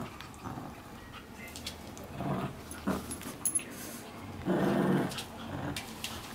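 Shih tzu growling in two short bursts, about two seconds in and again near five seconds, while tugging on a fluffy toy: a play growl during tug-of-war, not aggression.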